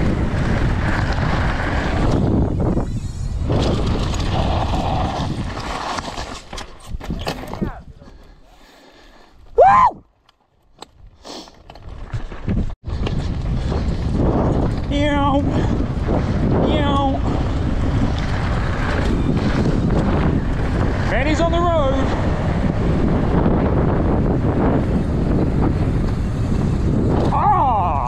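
Mountain bike descending a loose, dusty gravel trail at speed: tyres and bike rattling over the stones, with steady wind rush on the microphone. It drops quieter for a few seconds about a third of the way in, marked by a short rising whoop, and brief shouts ring out over the noise later on.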